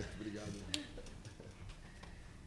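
A quiet pause in a large hearing room: faint background voices, and a single sharp click about three quarters of a second in.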